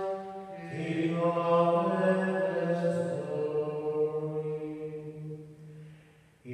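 A single man's voice chanting liturgical chant in long held notes, stepping from pitch to pitch every second or two, with the phrase fading away near the end.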